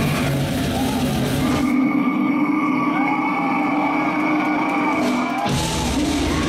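Metalcore band playing live, heard from the crowd at high volume. About two seconds in, the drums and bass drop out, leaving a single sustained note with a voice over it. Near the end, the full band comes crashing back in.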